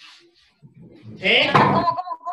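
Speech only: a short spoken question, "¿Sí?", about a second in, preceded by a few faint brief noises.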